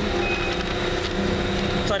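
Steady low rumble of a running vehicle engine, with a short high beep just after the start.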